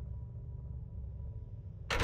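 A low, steady rumbling drone. Just before the end it is cut off by a sudden loud burst.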